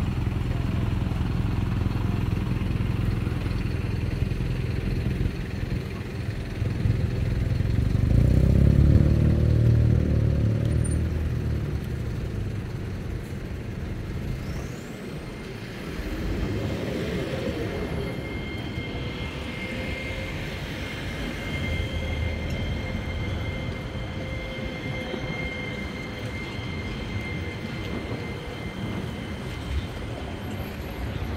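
Street traffic: cars and buses passing, loudest about eight to eleven seconds in, with a faint steady whine through the second half.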